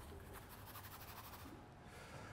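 Faint, quick strokes of a large paintbrush scrubbing thin acrylic paint onto canvas, stopping about one and a half seconds in.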